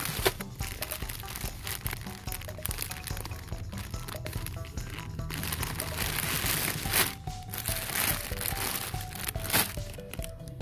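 Plastic candy bags crinkling and crackling as a hand handles them, over background music with a simple melody.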